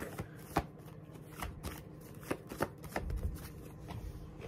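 A deck of tarot cards being shuffled by hand: a quiet series of short, irregular clicks and rustles as the cards slap together.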